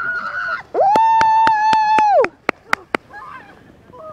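A bather running out of icy sea water gives a brief squeal, then a loud scream held on one pitch for about a second and a half. A quick series of sharp clicks, about four a second, runs over the scream and goes on briefly after it.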